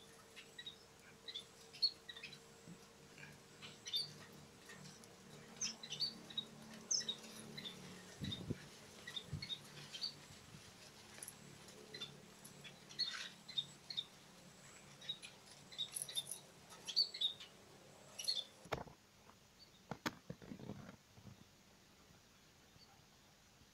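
Small aviary finches chirping: short, high chirps scattered all through, sometimes several a second, with a few low knocks around the middle and near the end.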